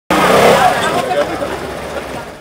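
Piaggio Liberty 125 scooter's engine running, loudest at the start and fading, with voices mixed in.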